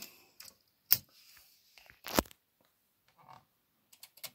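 Olympia SM9 manual typewriter's all-metal carriage lock being worked by hand: two sharp metallic clicks, about a second in and a little over a second later, with a few faint knocks between.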